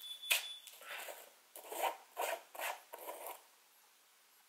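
Screw-top lid of a small black plastic jar being twisted open by hand: a sharp click, then about five short scraping turns of the plastic threads.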